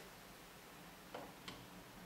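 Two faint clicks of a key being pressed on a Mitel MiVoice 5312 desk phone, a little over a second in and about a third of a second apart, over quiet room tone.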